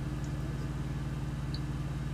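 Steady low hum of an idling semi-truck engine, heard from inside the cab.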